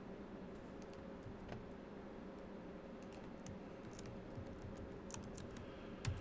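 Faint computer keyboard typing: scattered, irregular key clicks over a steady low hum.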